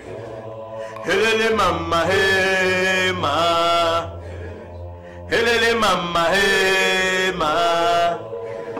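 Ritual chanting by male voices in long held notes, each phrase sliding up into its pitch, with short pauses between phrases over a steady low drone.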